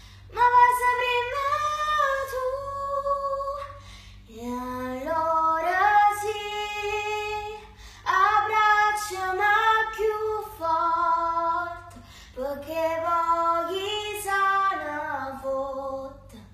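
A young girl singing solo in long, held phrases that glide between notes, pausing briefly for breath about every four seconds.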